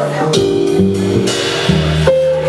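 Live jazz combo of piano, double bass, saxophone and drums playing: sustained chords over low bass notes, with a cymbal wash about midway.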